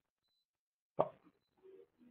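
Near silence, broken about a second in by one short spoken word from a man, followed by a faint murmur.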